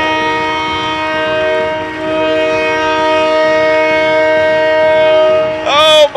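Ice-hockey arena goal horn sounding a steady chord of several tones, signalling a home-team goal. It dips briefly about two seconds in and cuts off near the end.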